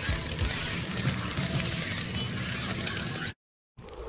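Car sound effect for the Batmobile driving off: a steady, fast-rattling engine noise that cuts off abruptly about three seconds in.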